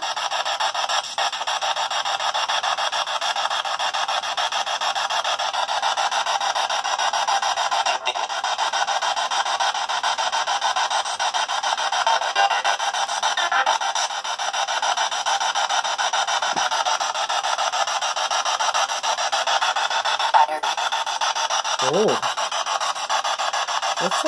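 P-SB7 Spirit Box sweeping rapidly through radio stations: a steady, choppy hiss of static with brief voice-like fragments breaking through now and then.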